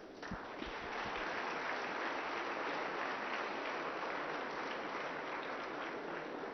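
Audience applauding: dense clapping that starts about a third of a second in and then holds steady.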